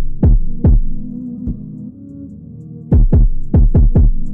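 Drill instrumental beat: deep bass hits that fall in pitch, three in the first second and a quick run of them in the last second, over a sustained synth chord.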